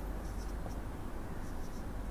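Felt-tip marker writing on a whiteboard: faint short squeaky strokes as numerals are drawn, over a low steady room hum.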